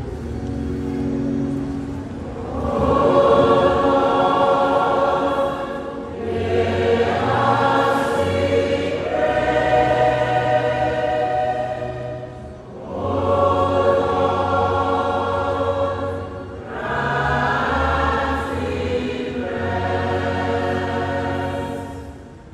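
Church choir singing the sung response to an intercession of a Catholic mass, slowly, in several long held phrases with short breaks between them.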